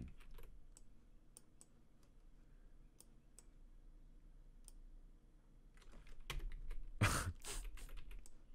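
Sparse, light clicks of a computer keyboard and mouse, a few isolated taps spread over several seconds, growing busier near the end with a louder short rush of noise about seven seconds in.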